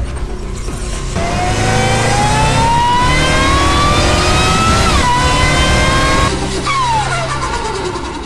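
Car engine accelerating hard, its pitch rising steadily for about four seconds, dropping sharply at a gear change about five seconds in, then falling away near the end, over a music bed.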